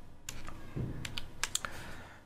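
Computer keyboard keys pressed a handful of times: separate, sharp clicks spread over two seconds.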